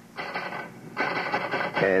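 Radio-drama sound effect of an address being typed into a machine: a short clattering, then a steadier machine sound. A man's voice comes in near the end.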